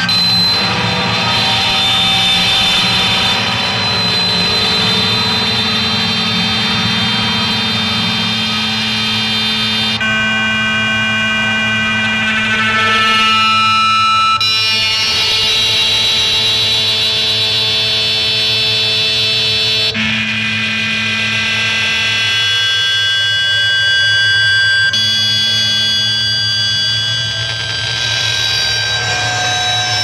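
Noise rock band playing live through amplifiers: a loud, continuous wall of distorted noise with sustained high whining tones. The texture changes abruptly twice, about a third and two-thirds of the way through.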